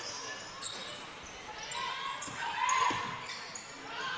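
Basketball being dribbled on a hardwood court, a few separate bounces echoing in a large indoor hall, with faint voices in the background.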